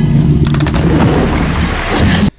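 Film soundtrack of a Tyrannosaurus rex attack in heavy rain: a loud, deep rumbling roar over steady rain hiss, starting suddenly.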